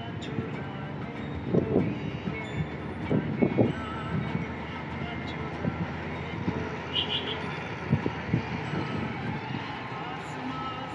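Steady road and engine noise of a moving vehicle, heard from inside it, with a few short louder sounds in the first four seconds and again near the end.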